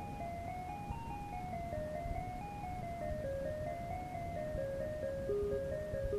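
A Casio MT-100 home keyboard playing a simple single-line melody of short, evenly paced notes, about four a second, in a plain, thin tone, replayed from an old cassette with a steady low rumble and hiss underneath.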